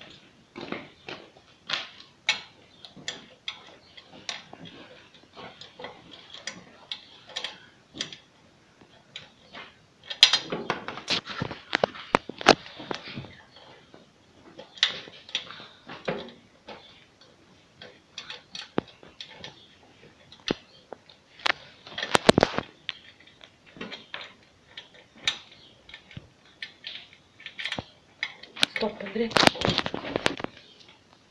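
Irregular metallic clicks and clinks of bolts, washers and a hand wrench against a flail mower's sheet-steel deck while fastening hardware, with denser runs of quick clicking about ten seconds in and again a little after twenty seconds.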